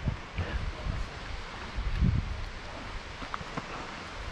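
Steady rushing noise of river water and wind on the microphone, with a few dull low thumps near the start and once about two seconds in.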